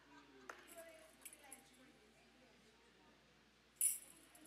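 Near quiet room tone with faint, indistinct voice sounds and a small click about half a second in, then a short hiss near the end.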